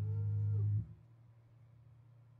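Electric bass holding a low final note through its amp, with a fainter higher tone rising and falling over it. The note is cut off sharply under a second in, leaving a steady amplifier hum.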